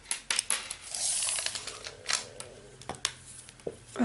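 Hands handling and sliding a crocheted cotton cord across a tabletop: a run of light clicks and taps, with a brief soft rustling drag about a second in.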